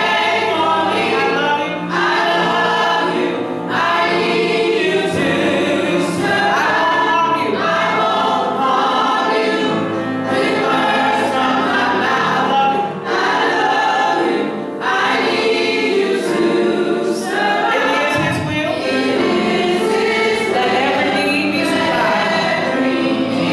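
Church choir singing a gospel song together, voices amplified through microphones.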